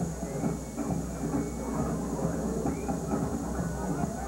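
Open-air ambience on a football field recorded by a camcorder microphone: a steady low hum under a continuous rumbling noise, with faint distant voices.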